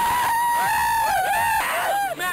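Several young people screaming and yelling at close range: one long high cry, then shorter shrieks that rise and fall.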